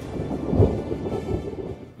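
A deep, thunder-like rumble with two heavier low booms, one about half a second in and one a little past one second, fading out near the end: a produced sound effect in a television intro.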